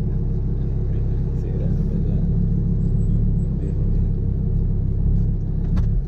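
Audi R8's engine running at a steady speed, heard inside the cabin as an even, loud low drone.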